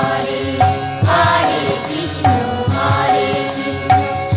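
Bengali devotional kirtan music: chanted group singing over a steady beat of percussion strikes, several a second.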